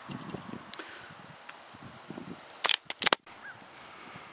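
Faint outdoor background broken, a little under three seconds in, by a quick cluster of four or five sharp clicks and a split-second dropout: handling noise on the camera as it is moved.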